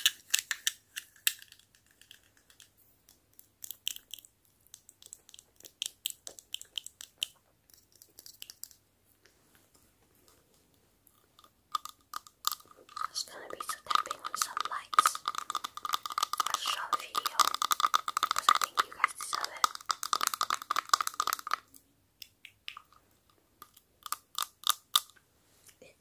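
Long fingernails tapping on plastic novelty lights: bursts of quick taps for the first eight seconds, then a dense, continuous stretch of tapping and rubbing from about twelve seconds in that stops near twenty-two seconds, and more quick taps near the end.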